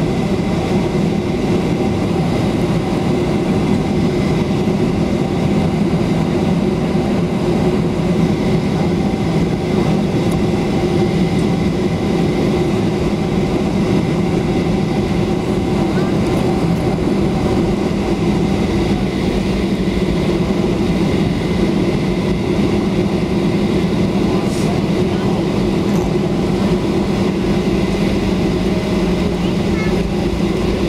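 Cabin noise inside a Boeing 737-800 taxiing after landing: a steady, loud hum from its CFM56 engines at low thrust, mixed with rumble from the wheels on the runway.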